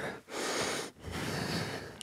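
A man breathing hard during squat-and-press exercise with dumbbells: two long, audible breaths, one starting about a quarter second in and the next just after the first second.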